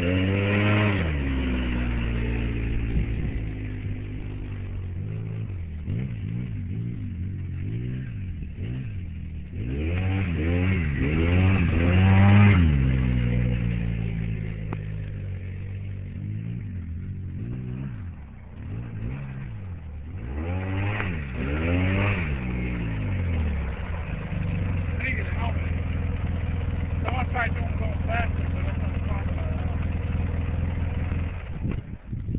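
Polaris Sportsman 800 ATV's twin-cylinder engine revving up and down as it is ridden, rising and falling in pitch in several swells, then settling to a steady idle for the last few seconds.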